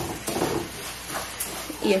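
Chicken breasts sizzling as they pan-fry in a little oil, a steady hiss with a few light kitchen knocks.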